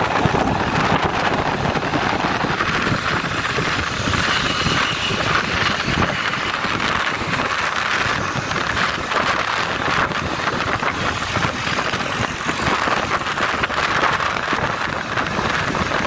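Steady wind rushing over the microphone mixed with a motorcycle engine running, heard from on the bike while it rides along the road.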